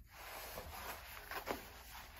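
Faint rustling and a few light taps of packaged tennis string sets being picked up and handled.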